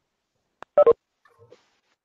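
A short electronic beep, a quick double blip of tones about a second in, over an otherwise silent online-meeting audio line.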